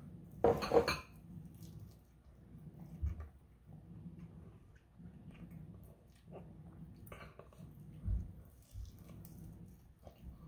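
Eating a chicken wing dabbed with hot sauce: a loud, sharp bite into the wing about half a second in, then quieter chewing and mouth sounds, with a few dull thumps.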